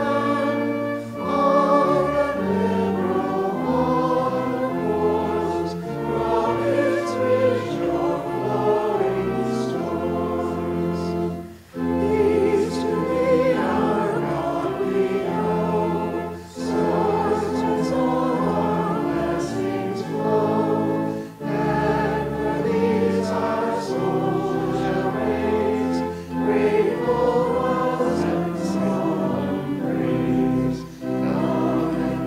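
A group of voices singing a sacred song with pipe organ accompaniment, phrase by phrase, with short breaks between phrases.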